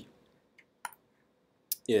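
Two short clicks of a computer mouse, close together a little under a second in.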